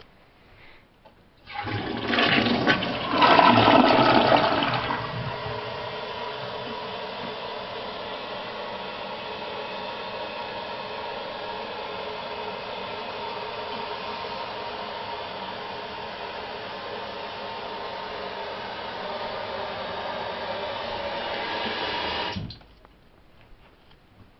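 Premiere 1.28-gallon-per-flush toilet flushing: a loud rush of water for about three seconds, then water running steadily as the toilet refills. The refill cuts off suddenly near the end.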